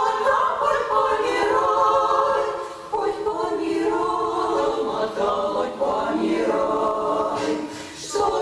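Women's vocal ensemble singing in several-part harmony, with a brief break between phrases just before three seconds in and another at the very end.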